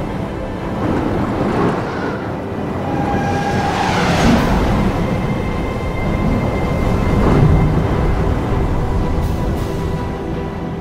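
Tense dramatic film score over a heavy, steady rumble, with two swells in loudness, about four seconds in and again at seven to eight seconds.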